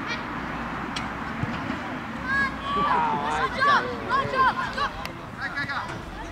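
Several children shouting and calling out during a youth football match: short, high-pitched overlapping yells from about two seconds in until near the end, over steady outdoor background noise, with a single sharp knock about a second in.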